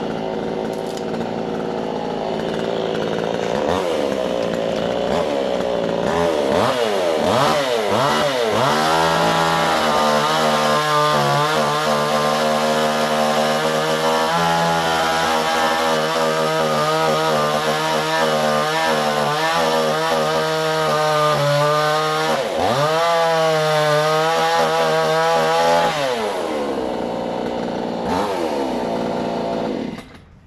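Small two-stroke chainsaw engine idling, then revved up and down several times before being held at high speed with a wavering pitch as it cuts into branches. Near the end it drops back to a lower speed and then cuts off abruptly.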